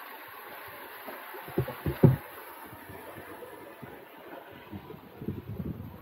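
Steady outdoor rushing noise with a few irregular low thumps, about two seconds in and again near the end.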